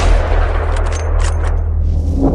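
Logo sting sound effect: a deep rumbling drone with a sudden gunshot-like blast at the start, trailing off in a noisy rush, with a few sharper cracks about a second in.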